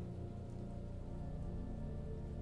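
Soft ambient background music of sustained low tones.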